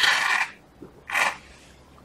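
Slurping through the metal bombilla of a mate gourd: two short, airy sucking sounds about a second apart.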